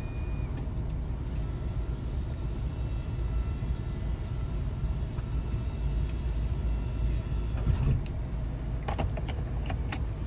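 Steady low rumble of a van idling, heard from inside the cabin, with a few sharp clicks near the end.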